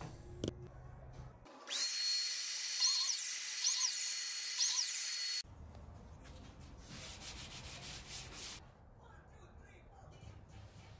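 DeWalt biscuit joiner cutting biscuit slots in pine boards: its high whine winds up about a second and a half in, shifts briefly in pitch a few times as it cuts, and stops abruptly about five seconds in. Softer handling noises follow.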